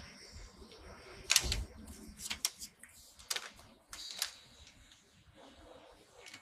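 A paper bag crinkling in several short bursts while a pastry is taken from it, the loudest crinkle a little over a second in.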